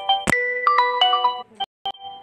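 Smartphone ringtone for an incoming WhatsApp voice call: a short tune of bell-like notes that starts over about a third of a second in. It breaks off about a second and a half in, leaving two brief fragments.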